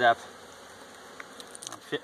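Honeybees buzzing around an open hive, a steady low hum, with a few faint clicks near the end from a hive tool working the frames.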